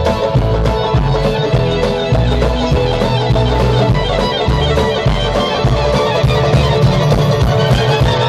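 Live band playing loud amplified music with electric guitar and upright bass over a steady beat.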